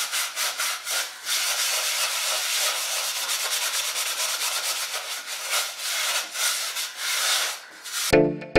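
A scrubber scouring the burnt, blackened inside of a steel saucepan by hand: a continuous rasping scrub in quick, uneven strokes, with short breaks in the first second or so.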